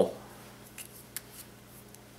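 A few faint, short clicks over a steady low hum.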